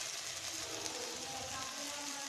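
A hot-oil tadka of fried onions and whole spices sizzling steadily where it lies on top of the yogurt-and-gram-flour kadhi, just after being poured in.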